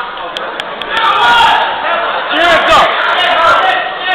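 Ringside spectators shouting and talking over one another, several voices overlapping, with a couple of brief clicks about half a second in.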